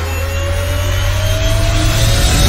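An edited transition sound effect: a rising whoosh over a deep rumble, with a faint tone gliding slowly upward as it grows steadily louder.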